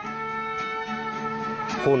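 Mariachi band playing: guitar under long held notes, with a voice starting to speak near the end.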